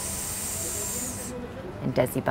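A woman's drawn-out hissing sibilant, a 'shh'-type speech sound held as a demonstration, trailing off and cutting off sharply a little over a second in.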